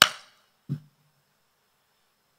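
A sharp click close to the microphone, then a short, low vocal sound from the man less than a second later.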